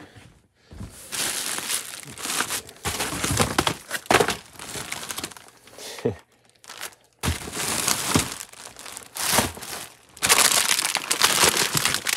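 Plastic poly bags and product packaging crinkling and rustling as hands dig through a bin of mixed merchandise, in uneven bursts with two brief pauses.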